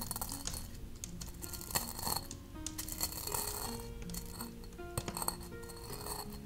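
A stone pestle grinding dry herbs in a heavy stone mortar, with a few sharp clicks and knocks of stone on stone, under soft background music of sustained notes.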